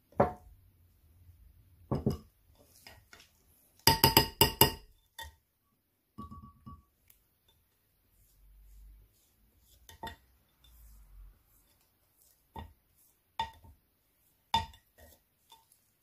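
A spoon clinking and tapping against glassware while scooping and stirring a sugar scrub mixture in a glass container. There is a quick run of clinks about four seconds in, then scattered single taps, each ringing briefly.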